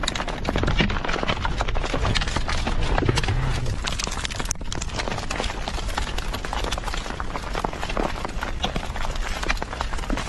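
Volcanic lapilli and stones raining down in a dense, irregular clatter of impacts on the ground and a vehicle's metal frame, over a steady low rushing noise.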